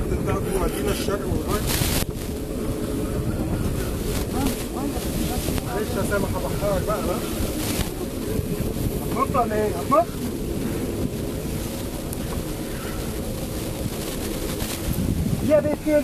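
Steady wind buffeting the microphone over the wash of the sea around a small boat, with a few short voices now and then.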